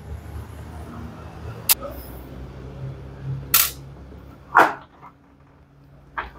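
A screwdriver prying the plastic control-panel cover of a top-loading washing machine: a sharp click about two seconds in and a snap of the plastic a little after halfway, over a low steady hum. A short, louder sound follows near the end.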